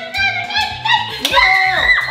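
Background music with a steady beat, with an excited voice calling out over it in the second half.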